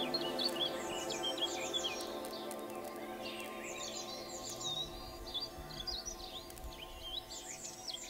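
Songbirds chirping and trilling in quick repeated phrases over a held synth drone that slowly fades out.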